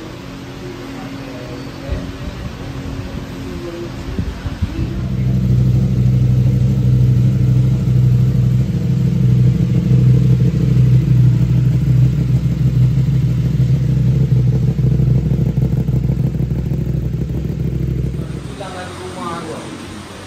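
The CFMOTO 800MT's parallel-twin engine starts about five seconds in, runs steadily at idle after its oil change, and is switched off near the end.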